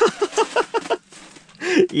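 A man laughing in a quick run of short 'ha' pulses, a brief pause, then another short laugh near the end.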